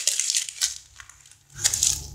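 A sheet of notebook paper being crumpled by hand: dense crackling that fades out about halfway through, then a fresh burst of crackling near the end.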